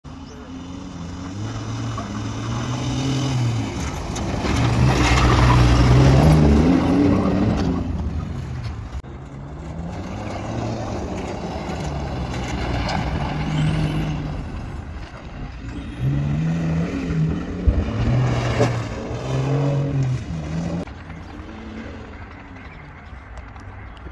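Modified Isuzu V-Cross pickup's diesel engine revving hard and easing off again and again as it drives over a dirt track, its pitch climbing and dropping with each push of the throttle; loudest a few seconds in. A few sharp knocks come about three-quarters of the way through.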